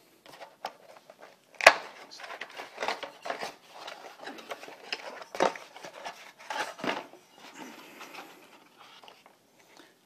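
Cardboard packaging rustling and scraping as an aluminium frying pan is pulled out of its box, with irregular taps and knocks, the sharpest about a second and a half in.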